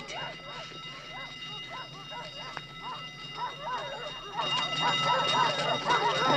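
Several dogs barking and yelping in quick succession, the barking growing louder and denser about four seconds in, as guard dogs close in on a scent.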